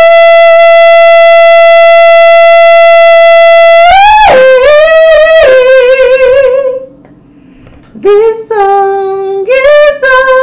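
A woman singing unaccompanied: one long, steady held note for about four seconds, then a wordless wavering melodic phrase, a brief pause near the seven-second mark, and a few more sung notes towards the end.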